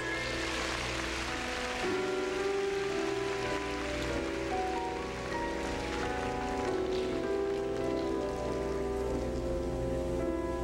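Pairs skating program music playing in an arena, with audience applause swelling at the start, strongest for about two seconds and then going on more softly under the music, in response to a just-completed death spiral.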